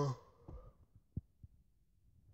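A man's held 'uhh' trails off at the start, then three faint soft thumps from the phone being handled and tapped while he looks up another verse.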